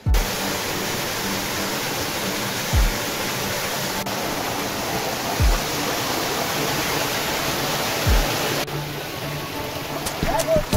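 Shallow mountain stream rushing over rocks, a loud steady hiss of water that starts abruptly. Background music runs under it, with a low thud about every two and a half seconds.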